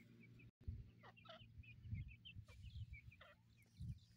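Grey francolins giving soft, quick chirping calls, many short high notes in a loose run. Under them a low rumble and a few dull thumps of microphone handling.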